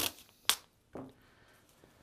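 A single sharp snap about half a second in, followed by faint room tone.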